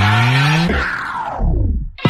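An edit transition in the background music: a rising synth tone climbs until about two-thirds of a second in. Then the whole mix slides down in pitch and slows like a tape stop, dying away to almost nothing near the end.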